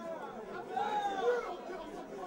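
Crowd chatter: several people talking at once, with no music playing.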